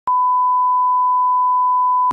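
Steady 1 kHz pure test tone: the reference tone of 'bars and tone' that accompanies SMPTE colour bars.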